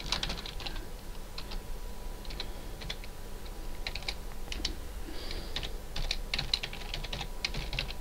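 Typing on a computer keyboard: irregular runs of quick keystroke clicks with short pauses between words.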